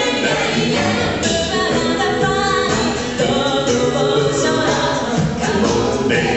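An a cappella vocal group of men and women singing in harmony into microphones, several voices on different parts at once, with no instruments.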